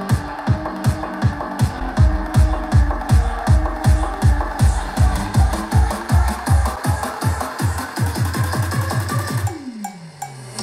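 Electronic dance music with a heavy kick drum, about two hits a second, played through Edifier R1600T Plus bookshelf speakers, with the Pioneer S-W160S-K subwoofer off at first and switched on partway through. Near the end the kicks speed up into a fast roll, then stop suddenly.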